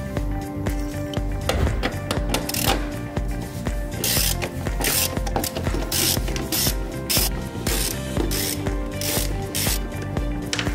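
Hand tools working on steel strut-top mounting bolts: a wire brush scraping in repeated short strokes, then a socket wrench on the nuts later on. Background music with a steady beat runs underneath.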